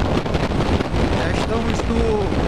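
Wind buffeting the microphone over the steady drone of a Ducati Monster 696's air-cooled V-twin engine, cruising at road speed.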